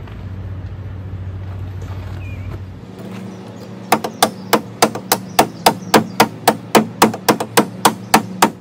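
A stone striker struck rapidly and repeatedly against the steel blade of a Corona RazorTOOTH pruning saw, about three to four sharp scraping strikes a second from about four seconds in. Each strike casts sparks onto ash-saturated tinder to get it to ignite.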